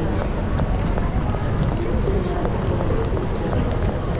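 Busy street ambience at a crowded pedestrian crossing: many voices chattering in the background, footsteps, and a steady low rumble of city noise.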